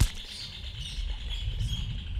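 A sharp knock at the very start, then low, scratchy rustling and rumbling, with a steady high chirring of insects behind it.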